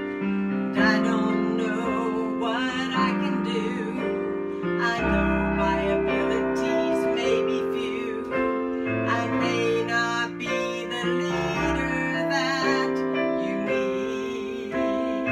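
Piano accompaniment to a gospel song, long sustained chords, with a deep bass note entering about five seconds in.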